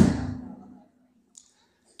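The last syllable of a man's chanted sermon line through a microphone and PA, its echo dying away within the first second. A pause of near silence follows.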